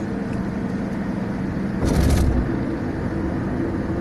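Steady road and engine noise heard from inside a moving vehicle at highway speed, with a brief louder rush of noise about two seconds in.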